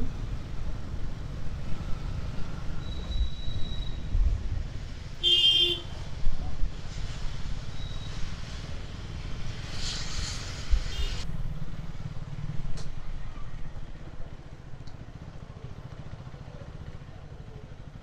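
Single-cylinder motorcycle engine running at low speed in traffic, with road noise. A short horn beep comes about five seconds in and a burst of hiss about ten seconds in. The engine settles lower and steadier in the last few seconds.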